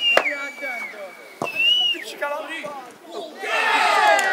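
Spectators at a youth football match shouting, with a held whistle at the start and another whistle that rises and falls about a second and a half in. A sharp knock comes just before the second whistle, and crowd voices swell near the end.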